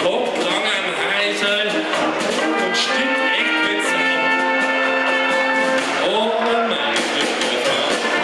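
Brass band playing live: trumpets, trombone and tubas sounding long held chords, with drums and cymbals ticking along over them.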